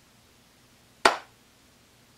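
A single sharp hand clap about a second in, against quiet room tone.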